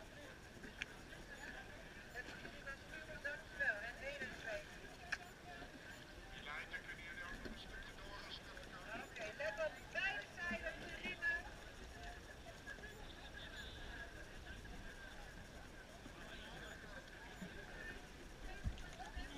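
Faint, indistinct voices of many rowers and marshals calling and talking across the water, coming and going in snatches, with a couple of light clicks.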